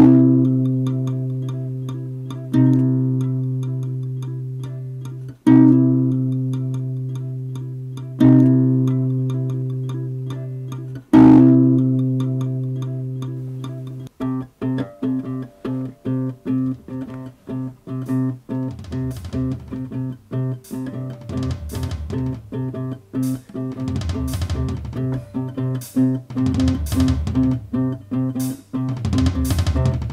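Background music on guitar: a chord struck and left to ring out, five times about three seconds apart, then about halfway through a fast, steady picked rhythm, with bass notes joining a few seconds later.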